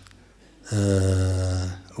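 A man's drawn-out hesitation sound: a single steady, low hum or held vowel on one unchanging pitch. It starts about two-thirds of a second in, after a brief pause, and lasts about a second.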